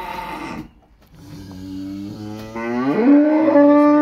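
A cow mooing: one long call that starts about a second in, rises in pitch about three seconds in, and is held loud and steady from there.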